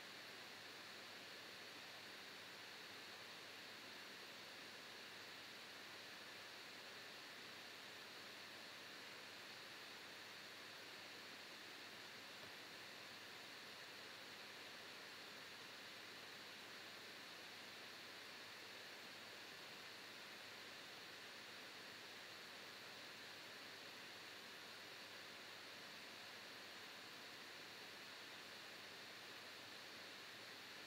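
Faint, steady hiss of a laptop's cooling fan running hard, the computer under heavy load.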